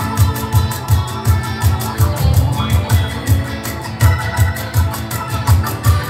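A live band playing an instrumental passage: acoustic and electric guitars with keyboard over a cajon keeping a steady beat of about three low strikes a second.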